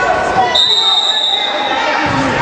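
Referee's whistle blown in one long steady blast, starting about half a second in and lasting about a second and a half, stopping play as players tie up over the ball. It rings out over crowd voices in a reverberant gym.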